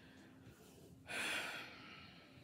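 A woman's heavy sigh about a second in: a single breathy rush of air that fades out over about half a second.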